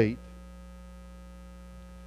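Steady electrical mains hum with a buzzy edge of many overtones, running unchanged through a pause in speech.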